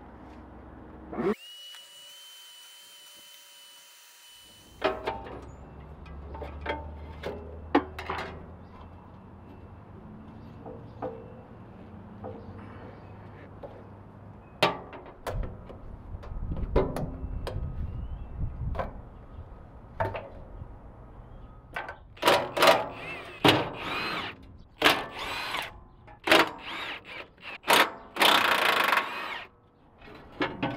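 A power drill spins up and runs steadily for about three seconds, then clicks and knocks of tools against metal. Near the end come several short, loud bursts of the power tool.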